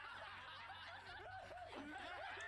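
Faint laughter from a crowd of animated characters in the anime, many voices laughing over one another at once.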